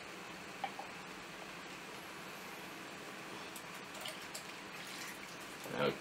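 Quiet room tone with a few faint drips and light taps of glass and plastic as a hydrometer is drawn out of a test jar of mead must.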